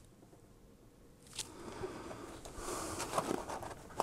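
Quiet handling of cardboard packaging: a single small click about a second and a half in, then soft scraping and rustling with a few light clicks as the small GPS tracker is worked out of its cardboard insert tray.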